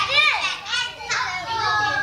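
An audience of young children shouting and squealing all at once, many high voices overlapping.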